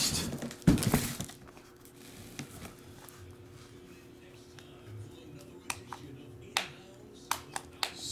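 Tabletop handling of boxes and cards: a brief loud rustle and knock about a second in, then scattered light taps and clicks as a shrink-wrapped helmet box is set in place.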